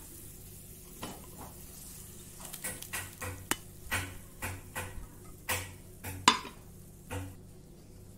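Wooden spoon scraping and knocking against a small frying pan as a hot tempering of ghee, oil and spices is emptied into a pot of curry, with a light sizzle. A run of short scrapes and taps, the sharpest knock near the end.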